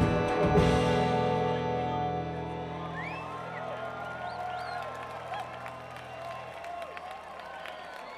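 A live afrobeat band of horns, keys, guitars, bass, drums and congas ends a tune. A final hit comes about half a second in, then the held closing chord fades over several seconds while the crowd cheers and whistles.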